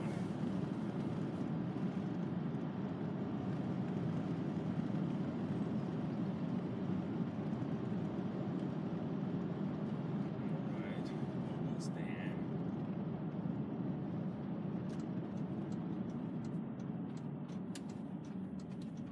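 Steady road and engine noise inside the cabin of a VW T5 Transporter van cruising along an open road, a low, even rumble with two brief faint higher sounds about 11 and 12 seconds in.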